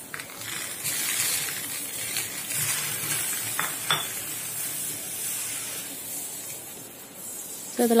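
Salt water sprinkled onto a hot, smoking metal bikang mould, sizzling and hissing as it boils off the cups, with a couple of light clicks about halfway and fading toward the end. The sizzle shows the mould is hot enough to take the batter.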